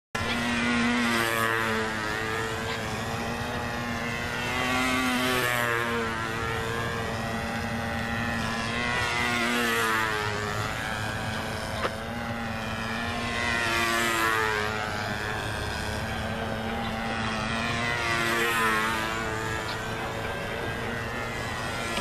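Small engine of a model Sterling PT-1T biplane running steadily in flight. Its sound swells and fades as the plane passes by about every four to five seconds.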